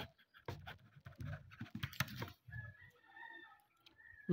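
Ballpoint pen writing on paper: faint short scratching strokes and ticks in the first couple of seconds. Near the end a faint steady tone is heard in the background.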